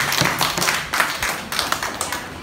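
A small group clapping by hand, scattered claps that thin out toward the end.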